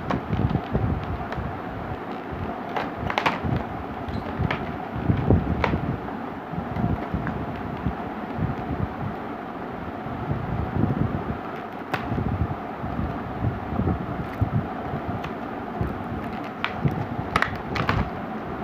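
Kitchen knife cutting and prying open a stiff clear plastic blister pack: irregular crackling, scraping and snapping of the plastic, with handling knocks throughout.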